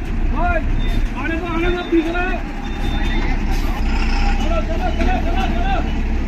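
Bus engine idling with a steady low rumble while people talk nearby, with a brief hiss of air about three and a half seconds in.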